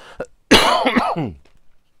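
A man coughing once, a rough clearing of the throat lasting about a second, starting about half a second in.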